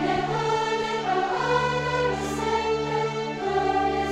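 A youth choir singing sustained notes together with a string orchestra of violins and cellos.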